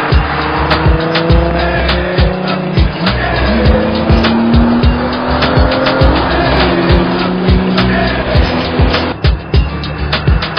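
A car engine under hard acceleration, its pitch slowly climbing, with a gear change about three and a half seconds in. Hip-hop music with a steady beat plays underneath.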